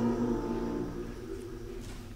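The final held chord of a hymn dying away in a reverberant church, fading over about a second, with one low tone lingering a little longer before quiet room tone.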